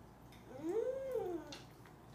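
A toddler's single drawn-out vocal sound, rising then falling in pitch, lasting about a second from about half a second in.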